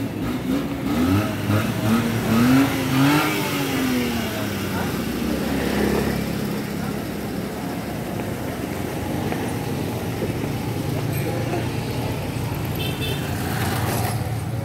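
Street traffic noise: a motor vehicle's engine rising and falling in pitch over the first few seconds as it passes, then a steady traffic hum.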